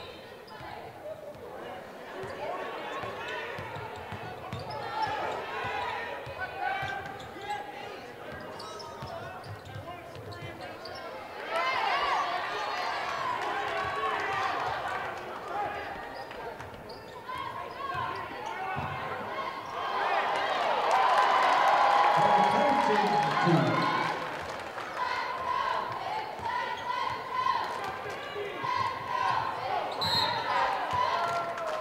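Basketball game ambience in a gym: a ball dribbling and bouncing on the hardwood floor under a steady murmur of crowd and player voices. The voices swell louder about twelve seconds in and again around twenty seconds in.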